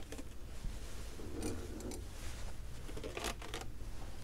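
Faint rustling and light scraping of a lidded foam cup calorimeter being swirled by hand to mix a freshly added chemical into the water, with a couple of soft brief scrapes.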